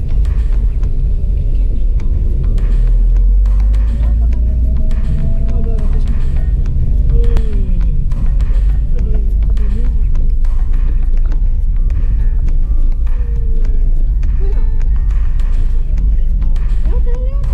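Steady low rumble of a car's engine and tyres heard inside the cabin while driving, with music and a singing voice playing over it.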